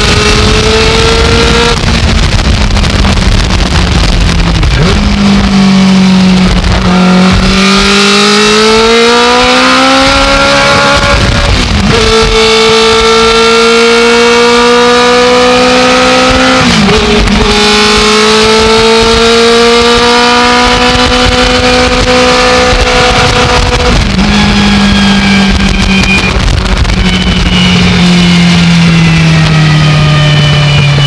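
A Legends race car's Yamaha motorcycle engine pulling hard in the cabin, its pitch climbing under acceleration. The pitch drops sharply at upshifts about 12 and 17 seconds in, then falls steadily near the end as the revs come down.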